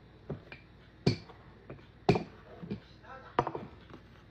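A series of sharp knocks and taps on a kitchen tabletop, about six in four seconds, the loudest about one and two seconds in, as pie crust dough is worked by hand.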